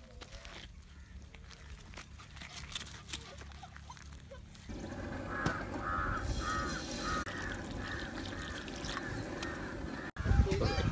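Water pouring from a plastic bottle into a nonstick frying pan, starting abruptly about five seconds in and splashing steadily, with a regular run of short repeated honk-like tones over it. Before that there is only faint rustling and clicks.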